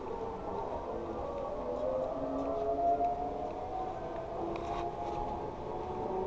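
Zipline trolley pulleys running along the steel cable: a wavering, singing whine that climbs slowly in pitch through the middle as a rider comes in.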